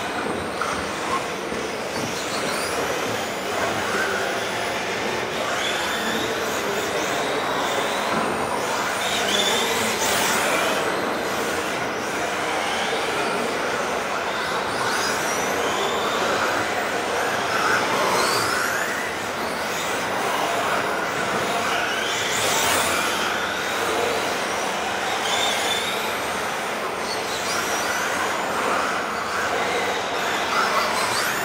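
Several electric radio-controlled model cars lapping a carpet track, their motors whining up and down in pitch as they accelerate and brake, over a steady hiss of tyres on carpet. The sound echoes in a large hall.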